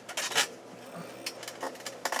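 Commodore Amiga 4000 starting up just after being switched on: a few light clicks and rattles over a low steady noise as its cooling fan starts to run.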